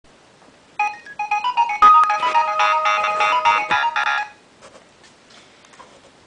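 A short electronic melody of quick, high notes, much like a phone ringtone, starting just under a second in and stopping after about three and a half seconds, with a sharp click about two seconds in.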